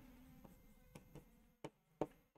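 Near silence, with a few faint ticks and light scratching from a marker writing on a whiteboard.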